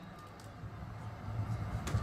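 A pause in a speech over a microphone: faint, steady background noise with a low rumble, and a short click just before the voice resumes.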